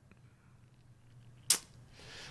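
Near-quiet room tone broken, about one and a half seconds in, by a single sharp mouth click, lips or tongue parting close to the microphone.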